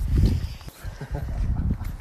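Footsteps on a paved sidewalk, irregular short knocks, over a low rumble of wind on a phone microphone.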